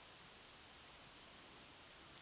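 Near silence: a faint, steady room hiss in a pause between spoken sentences.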